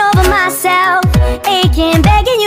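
Electronic pop song playing, with a vocal melody over deep bass drum hits that fall sharply in pitch, several in quick succession.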